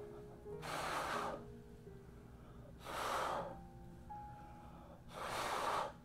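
A person blowing three puffs of breath across wet pour paint, about two seconds apart, over soft background music.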